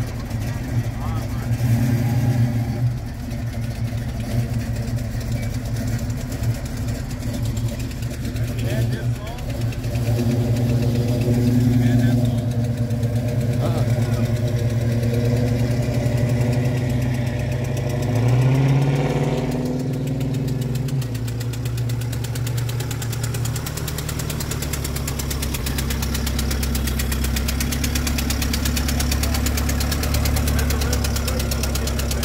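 A car engine idling steadily, with one short rev a little past the middle. A deeper, lower rumble takes over in the last few seconds.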